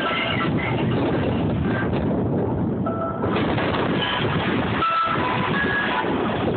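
Passenger train rolling along the track, a steady rumble and rush of noise heard from an open-air car, with short high squeaky tones coming and going.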